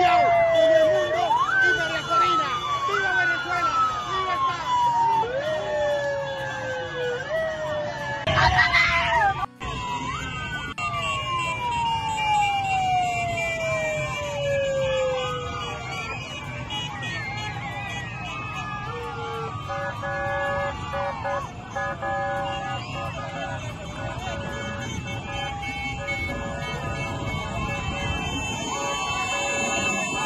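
Sirens wailing in repeated swoops, each jumping up in pitch and then sliding down over about two seconds, over a shouting crowd. After a break about nine seconds in, one long falling siren wail follows, then short steady horn tones over the crowd noise.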